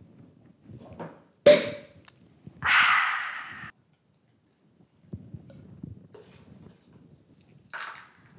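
Champagne cork popping out of the bottle with one sharp pop, followed about a second later by a second-long fizzing hiss of the sparkling wine, which cuts off suddenly. Faint clinks and knocks of glassware follow.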